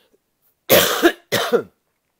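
A man coughing twice in quick succession, loud and close to the microphone.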